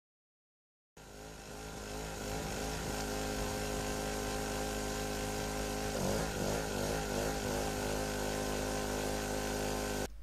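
Small two-stroke portable generator engine running under the load of a bank of halogen lamps. It comes in about a second in and runs steadily. About six seconds in its pitch wavers for a second or so as a load switch is toggled, then steadies again: the engine's speed shifting while its mechanical governor catches up.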